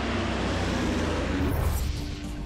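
Twin-turboprop Dornier in flight: a steady, deep rumble of engines and propellers that falls away about one and a half seconds in, as steady music tones come in.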